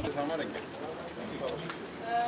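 Several people talking indistinctly in a crowd, low murmured voices with no single clear speaker.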